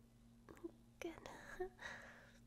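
A woman whispering softly in short phrases, over a faint steady hum.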